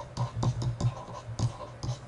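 A pen stylus scratching and tapping on a tablet surface as a word is handwritten, in short irregular strokes, over a low steady hum.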